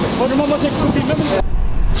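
Flames of a wildfire burning with a steady rushing, crackling noise, with people's voices faintly in it. The noise cuts off suddenly about one and a half seconds in, leaving a low rumble.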